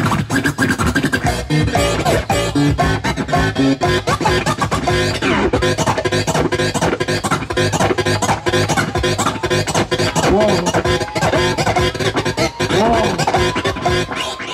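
DJ scratching a vinyl record on a turntable over a hip hop beat coming through PA speakers, the record's pitch sweeping rapidly up and down between sharp cuts.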